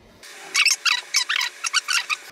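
A quick run of about nine short, high-pitched squeaks, loud against the quiet room.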